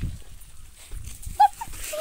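A puppy gives one short yelp about one and a half seconds in, over low rumble and rustle from the phone being carried at a run.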